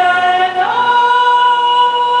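Two women's voices singing a traditional Ladino song in duet, with long held notes; a little after half a second in the upper voice slides up to a higher note and holds it.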